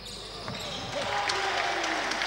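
Live game sound from an indoor basketball court: a few knocks of the ball on the hardwood floor under a wash of noise from the hall that grows louder about a second in.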